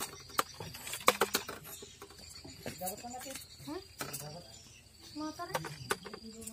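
Steady high-pitched insect drone from crickets, with a few sharp clicks near the start and a man's brief murmurs and a short "Hah?" about halfway through.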